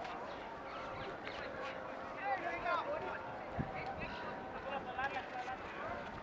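Faint open-air ambience of a polo match on a grass field: scattered distant calls and chirps, with two sharp knocks a little past halfway.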